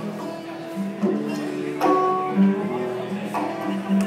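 Acoustic guitars playing live, chords strummed and left ringing, with fresh strums about a second in, just before two seconds, and again past three seconds.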